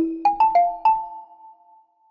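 Short musical logo chime: a sharp hit with a low ringing note, then four quick bell-like struck notes that ring on and fade away.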